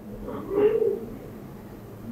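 A single short, low-pitched bird call lasting about half a second.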